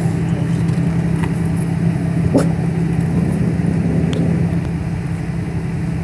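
An engine idling with a steady low hum, with a few faint clicks over it.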